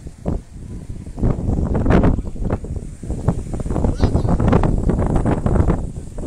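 Wind buffeting the microphone in uneven gusts, a rumbling rush that rises and falls.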